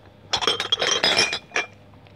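Glass bottles and jars clinking and clattering against each other in a quick, loud run lasting about a second, then one more clink.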